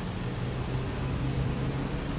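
Room tone: a steady low hum under an even hiss, with no distinct events.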